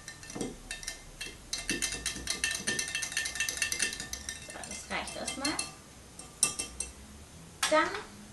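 Wire whisk stirring in a glass jug, with fast, irregular metallic clinks against the glass as grated curd soap is dissolved in hot water. A single sharper knock comes near the end.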